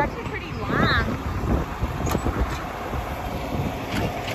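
Low running rumble of a moving farm ride train, with wind buffeting the microphone. A brief voice sound comes about a second in.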